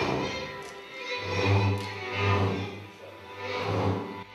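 Hungarian folk music rehearsal with a double bass playing low notes. The bass is strongest through the middle, under the higher instruments of the group.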